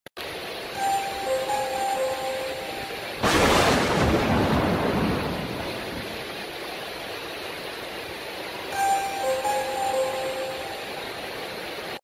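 Thunderstorm sound effect: a steady rain-like hiss, with a loud clap of thunder about three seconds in that rumbles away over the next few seconds. A short run of clear tones stepping down in pitch sounds about a second in and again around nine seconds.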